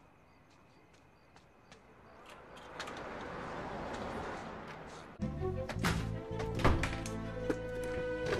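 A car driving past, its noise swelling and then fading. About five seconds in, music starts suddenly, with several sharp thuds over it.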